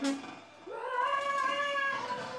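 A woman's improvised singing: after a brief pause, her voice slides upward into a high, slightly wavering held note. A low note fades out just at the start.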